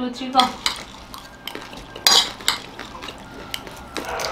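A spoon and a fork clinking and scraping against plates while eating, scattered short clicks with the loudest about two seconds in.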